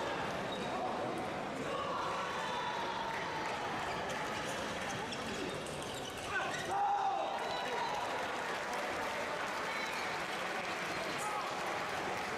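Table tennis ball clicking off the table and bats during a doubles rally, over a constant hubbub of crowd chatter in a large hall. A louder shout comes just after halfway.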